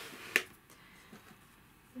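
A single sharp click about a third of a second in, followed by a few faint light ticks of handling.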